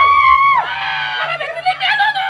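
A woman screaming in pain, as she is bitten, in repeated long high cries each held about half a second, over faint background music.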